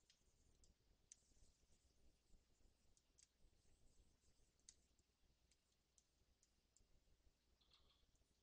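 Near silence, with faint, irregular clicks, roughly one a second, from the input device used to paint strokes at the computer.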